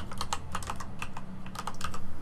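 Typing on a computer keyboard: a quick, uneven run of about a dozen keystrokes, bunched closer together near the end.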